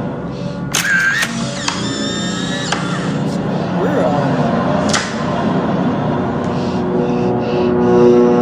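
An instant camera is fired about a second in, and its motor then whirs for about a second as it ejects the print. Background music plays throughout.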